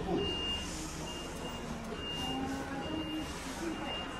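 An electronic beeper sounding a high single-pitched beep, short and repeating steadily about once a second.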